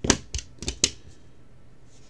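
Four sharp clicks and taps in the first second, the first the loudest, as trading cards and a plastic top loader are handled and set down on a table.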